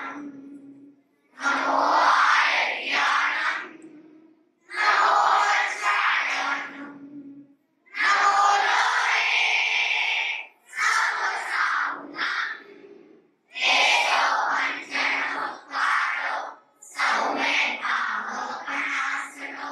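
Several women singing together into microphones over a PA, in phrases of about two to three seconds with short breaks between them.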